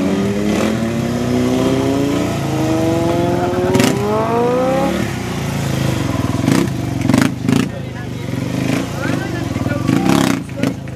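Motorcycle engine held on the throttle through a wheelie, its note climbing steadily for about five seconds, then dropping back to a lower running note. Several sharp knocks come in the second half.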